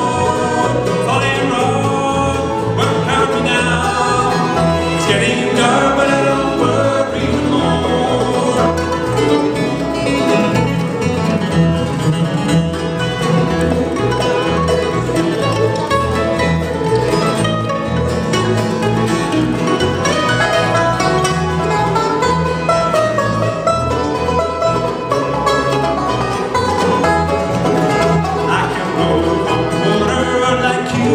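Live bluegrass band playing: banjo, mandolin, acoustic guitars and fiddle over an upright bass that keeps a steady beat.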